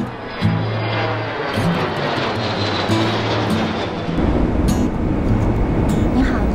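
Jet airliner flying over, its engines heard as a steady rumble with a faint falling whine, under background music. About four seconds in a deeper, denser low drone takes over, the sound of the airliner's cabin in flight.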